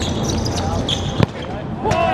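A futsal ball kicked hard: one sharp thud a little over a second in, then a second sharp knock shortly before the end, over steady background noise.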